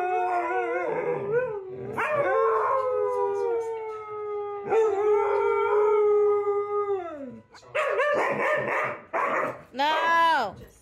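A Siberian husky and a second dog howling together, a run of long drawn-out howls that waver and then slide down in pitch. The howling stops about seven and a half seconds in, and a few shorter, rougher sounds follow.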